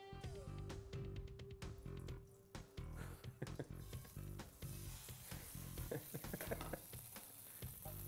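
Fish fillet sizzling in hot oil in a frying pan as it is laid in. The sizzle comes in about halfway through, under background music with a steady beat.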